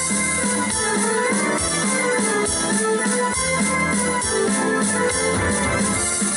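A live dance band playing an instrumental passage, with keyboard and drum kit keeping a quick, steady beat.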